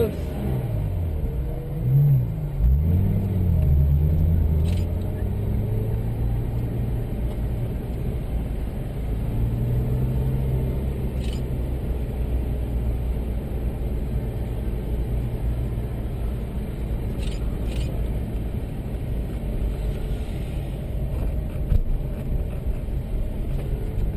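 Porsche engine heard from inside the car: the revs rise and fall a few times in the first four seconds, then it runs at a steady low speed with road and wind noise as the car is driven off the track.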